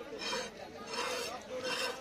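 A large broad-bladed fish-cutting knife being sharpened on a steel rod: three scraping strokes of metal on metal, about two-thirds of a second apart.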